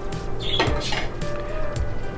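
Metal clinks against a steel cooking pot about half a second in, with a fainter one near one second, over steady background music.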